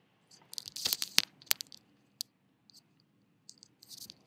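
Irregular crackles and sharp clicks in two clusters, the loudest click a little over a second in, and a second cluster near the end.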